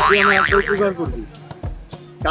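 A comic sound effect whose pitch wavers quickly up and down several times, lasting under a second near the start, over held background music that fades out in the second half.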